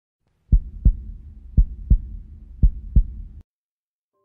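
A heartbeat sound effect: three slow lub-dub double beats, about one a second, over a low rumble, cutting off suddenly.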